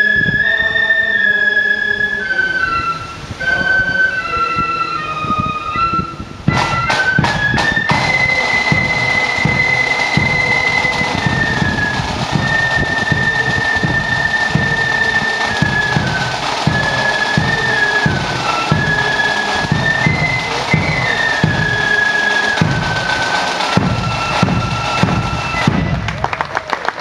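Flute band music. Flutes play a slow melody on their own, then about six seconds in a quick roll of drum strikes brings in the drums, and the flutes carry on over a regular drum beat.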